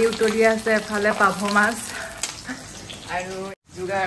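A woman talking, over a low sizzle of fish frying in oil. The talk pauses about halfway and picks up again near the end.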